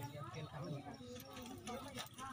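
Faint voices of people talking, quieter than the nearby speech, with no clear sound from the snake or water.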